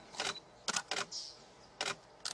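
A series of short, sharp clicks, about five in two seconds and unevenly spaced, two of them close together.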